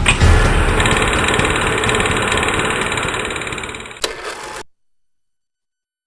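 Title-card sound effect: a loud, dense buzzing static noise with a rapid fluttering texture, fading gradually, with a sharp click near the end before cutting off suddenly to silence.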